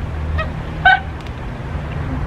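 A baby's two short, high-pitched squeals, about half a second apart, over a steady low rumble.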